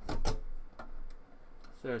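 Small Torx screws being threaded by hand into a computer case's metal drive cage: a louder knock at the start, then a few light, scattered clicks.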